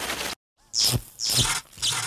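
Sound effects of an animated logo intro: a burst of glitchy noise that cuts off suddenly, then two quick whooshes falling in pitch.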